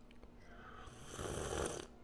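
A person slurping a sip of drink from a mug close to the microphone: one slurp of about a second, starting about a second in.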